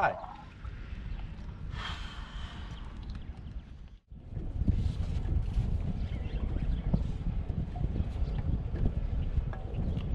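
Wind rumbling on the microphone of a camera on a small open boat. A brief hiss comes about two seconds in, and the sound drops out at a cut about four seconds in.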